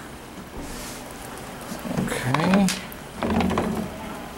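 A man's short wordless vocal sounds, mumbling, about halfway through and again near the end, with a few light clicks and knocks as a battery bank is lifted out of a glass of water and laid on a cast-iron table.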